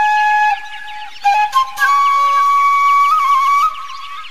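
Background music: a flute playing a slow melody of long held notes, one note breaking off about half a second in and a higher note taking over about a second and a half in.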